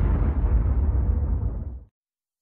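Cinematic logo-reveal sound effect: the low rumbling tail of a boom-like impact, dying away and cutting off near the end.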